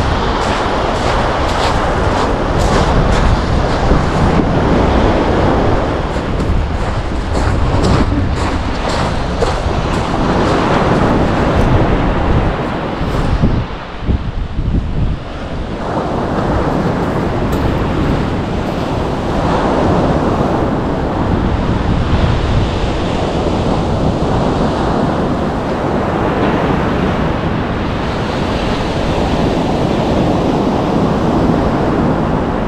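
Wind buffeting the microphone over surf breaking on the beach, a steady rushing noise heaviest at the low end. Faint clicks come through in the first half, and the noise dips briefly about halfway through.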